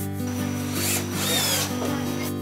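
Cordless drill/driver turning a screw into a board, one burst of about a second and a half, with its whine falling in pitch near the end.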